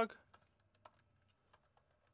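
Computer keyboard typing: faint, irregular keystrokes as code is entered.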